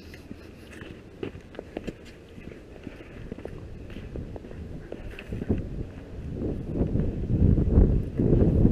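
Footsteps on a dirt driveway: scattered light clicks at first, then a low rumbling noise that grows louder over the last few seconds.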